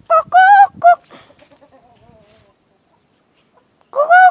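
Rooster giving a short, loud, three-part crow near the start, followed by a quieter falling run of notes, and crowing again just before the end.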